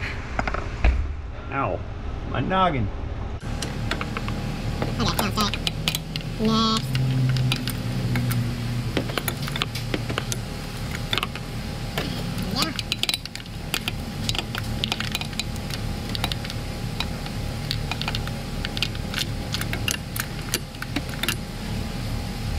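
Hand ratchet clicking in irregular short runs while spark plugs are tightened by hand, over a steady low hum. The ratchet has a lot of backlash, so it is worked in many short strokes.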